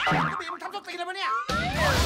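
Film trailer soundtrack: comic sound effects of wobbling, sliding tones, then loud music cuts in suddenly about one and a half seconds in, with rising and falling whistling tones crossing over it.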